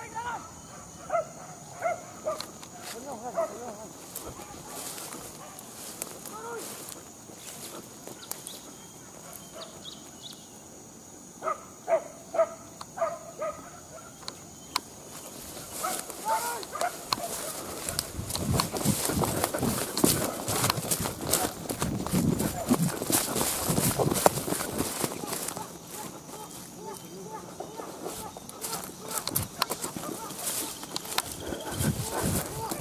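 Hunting dogs barking and yelping at a distance in short runs, near the start and again about twelve seconds in. A louder, rough noise fills several seconds in the second half.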